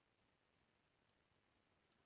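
Near silence, broken by two faint single clicks of a computer mouse button, about a second in and again near the end.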